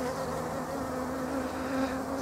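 Honeybees buzzing around a hive entrance, a steady hum. The colony is a little agitated by the pollen trap just fitted over the entrance.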